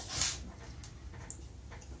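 A short hiss near the start, then a few faint, sparse clicks of computer keyboard keys being pressed.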